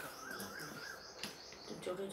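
A cricket's thin, high, steady chirping trill in the first half, with two sharp clicks of utensils on the steel dishes in the second half.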